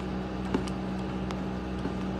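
A steady low background hum, with a few faint clicks about half a second in and again near the middle.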